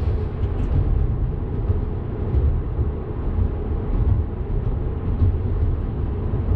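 Steady road and tyre rumble inside the cabin of a car cruising at speed.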